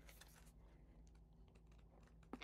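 Near silence: faint rustling of paperback pages being handled in the first half-second, over a low steady hum.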